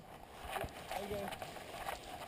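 Irregular knocks and jolts from a GoPro mounted in a harness on a moving cheetah's back, picking up the cheetah's footfalls and the camera shaking in its mount. A distant voice calls about a second in.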